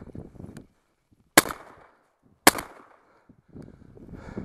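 Two shotgun shots about a second apart, each with a short echo trailing off.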